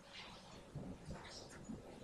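A few faint, irregular keystrokes on a computer keyboard as a command is typed, over low background noise.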